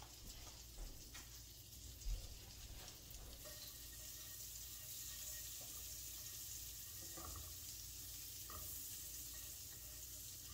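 A teaspoon of butter melting in a nonstick frying pan on low heat, giving a faint, steady sizzle that grows a little louder from about three and a half seconds in, as it is pushed around with a silicone spatula. A light knock comes about two seconds in.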